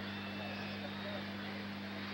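Steady low electrical hum with faint background hiss, unchanging throughout, with no distinct event.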